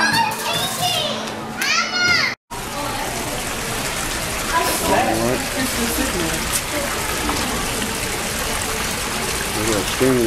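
Children's high voices and squeals, then an abrupt cut to a steady rush of running aquarium water, with faint voices over it.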